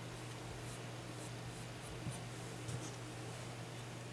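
Bare fingers rubbing Tru-Oil into a wooden shotgun stock: faint, short scratchy rubbing strokes over a steady low hum.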